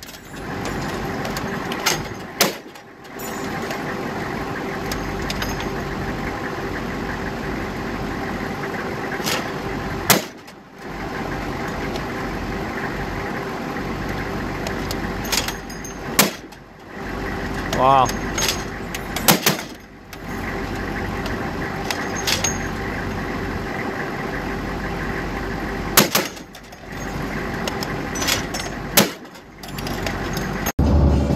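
Armored Humvee's diesel engine and drivetrain running steadily while the vehicle moves, with knocks and rattles scattered through. The noise drops away briefly several times.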